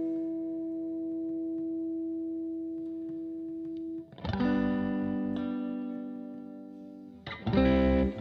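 Electric guitar played through effects: a long, steady held note for about four seconds, then a new chord struck that slowly fades, and another struck shortly before the end.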